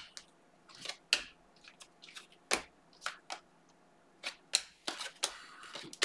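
A stack of glossy trading cards being flipped through by hand, one card at a time: about ten short, irregular clicks and slides of card stock snapping against card stock.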